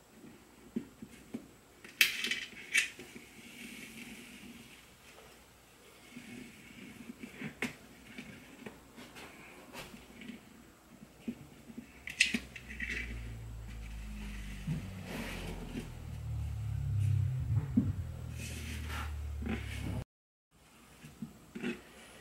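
A soaked goat hide being hand-stitched onto a dried gourd with a needle and dental floss: a few sharp, scratchy strokes as the floss is pulled tight through the hide, with soft handling of the hide and gourd. A low rumble builds in the second half, and the sound drops out briefly near the end.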